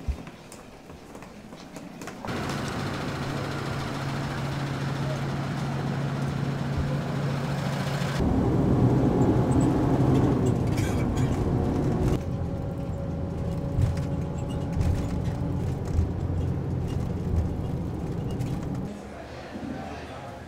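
Cabin noise inside a moving bus: a steady low engine and road rumble that starts about two seconds in and gets louder about eight seconds in.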